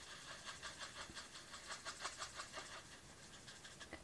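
Faint, quick, repeated strokes of a Stampin' Blends alcohol marker tip rubbing on stamped cardstock, several strokes a second, as colour is blended over a stamped image.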